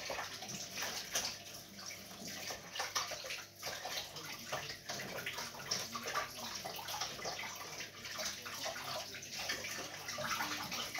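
Water running from a kitchen tap into the sink while hands and a plate are washed under it, with small knocks and clinks scattered throughout.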